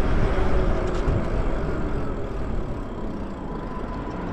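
Wind and road noise from riding an e-bike: wind buffeting the handlebar-mounted camera's microphone over the hum of tyres on asphalt, with a faint whine. The noise eases off through the second half as the bike slows toward an intersection.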